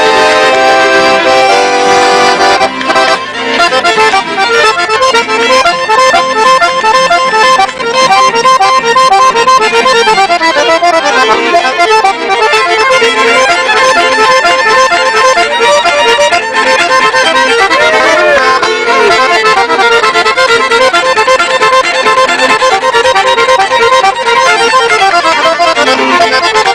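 Accordion and fiddle playing a lively Swedish folk tune together, the accordion to the fore.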